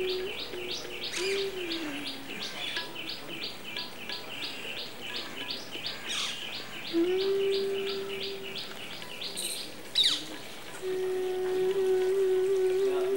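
A bird calling in a steady run of short high chirps, about four a second, with a sharp falling whistle near the end. A held low note sounds briefly about a second in, again from about seven seconds, and near the end.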